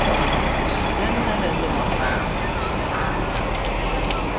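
Steady street traffic noise: vehicle engines and tyres running, with faint voices in the background.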